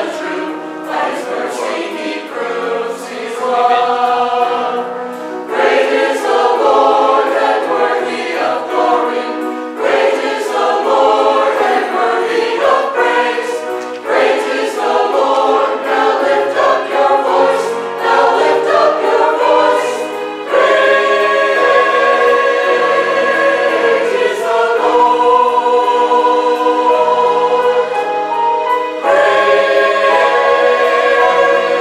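Mixed church choir of men's and women's voices singing together in parts, growing louder and fuller about two-thirds of the way through.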